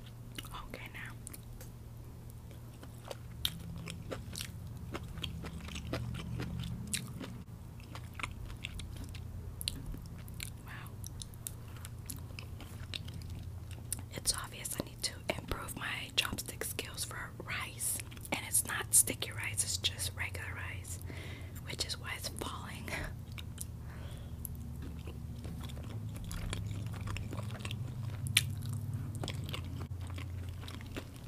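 Close-miked chewing of General Tso's chicken and white rice: wet mouth clicks and smacks, busiest in the middle after a piece of chicken is bitten, over a low steady hum.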